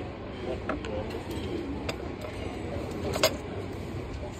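Light clicks and taps from a paper cup being handled with a wooden stirrer and a plastic lid, the sharpest tap about three seconds in, over a steady low outdoor rumble.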